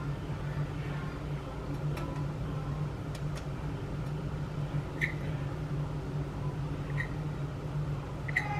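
A steady low hum, like a running kitchen appliance, with a few faint light clicks spread through it.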